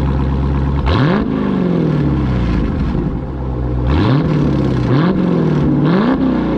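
A Dodge Challenger's engine idling and revved three times: each blip climbs quickly, then winds back down to idle over about a second.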